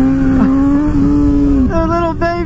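Honda CBR600RR inline-four engine revving under throttle, its pitch held high and climbing slowly, then dropping sharply about 1.7 s in as the throttle closes before picking up again.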